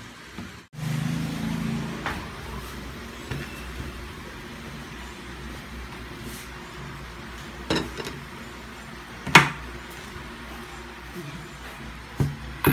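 A low steady hum with two sharp knocks of dishes set down on a table, the second, about nine seconds in, the louder.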